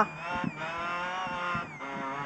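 Rally car's engine heard from inside the cabin, running with a steady pitched note whose revs dip briefly and then fall near the end.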